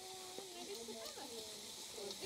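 Faint, distant voices with wavering pitch over a low outdoor hiss.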